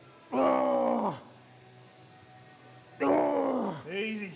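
A man groaning with effort, straining to push out a rep near failure: two long, loud groans whose pitch falls away, about three seconds apart, with a short third one starting at the very end.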